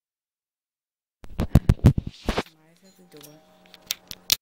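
A run of knocks and clatter about a second in, like the camera being handled on the bed, then faint voices from elsewhere in the house.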